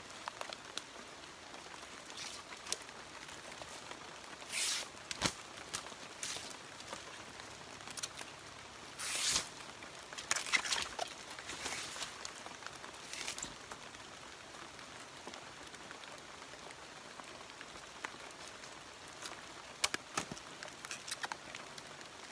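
Abaca leaf sheath being stripped by hand: several brief tearing swishes as long fibre strips are peeled away, with scattered small clicks near the end.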